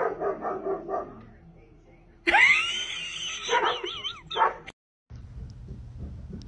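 A spitz-type dog gives a quick run of yips, then after a short pause a long howl that rises and wavers up and down in pitch before it stops abruptly.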